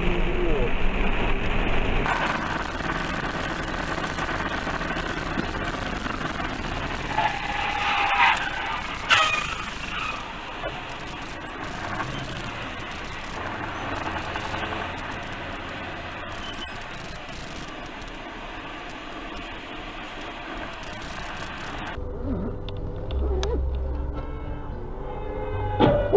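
Road and engine noise from a series of dashcam recordings made inside moving cars, changing abruptly where the clips cut, about two and twenty-two seconds in. A short tone and then a sharp knock come about eight to nine seconds in.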